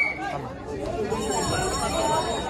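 Indistinct talk and chatter of several voices.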